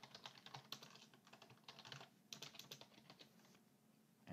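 Faint typing on a computer keyboard: quick runs of keystroke clicks with short pauses between them.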